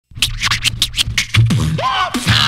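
Hip hop beat opening with turntable scratching: quick sharp scratch strokes, about six a second, over a steady bass line. A heavier bass note and sliding pitched scratches come in near the end.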